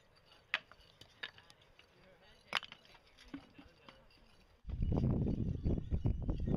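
Loose flat stone slabs clinking and knocking as rubble is lifted and set down: a few sharp, separate clicks, spread out over several seconds. Near the end a loud, steady rushing noise starts suddenly.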